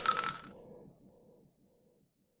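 A few short metallic clinks with a ringing tone close a trap metal track. They die away within about a second into silence.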